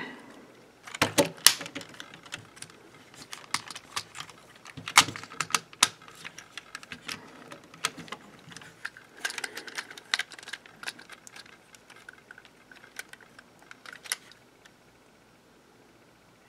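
Parts of a transforming robot action figure clicking and clacking as they are folded and pushed into place by hand, an irregular run of small sharp clicks that stops near the end.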